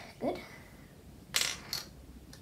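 Two sharp plastic clicks, about a second and a half in, as the pieces of a Turing Tumble marble-run computer are handled and set by hand.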